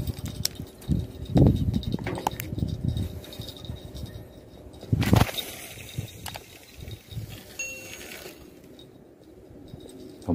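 Handling noise from a phone held and moved close to the hand: irregular knocks and thumps, the loudest about one and a half and five seconds in, with small clicks and clinks between them.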